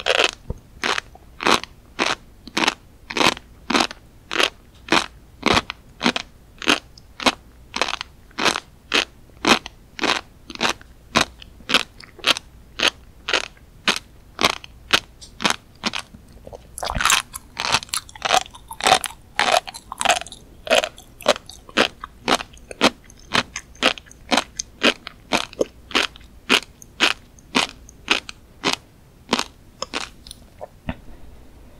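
Close-miked chewing of a mouthful of flying fish roe (tobiko), the tiny eggs crunching and popping between the teeth in a steady rhythm of about two crisp clicks a second. A denser stretch of crackling comes a little past halfway.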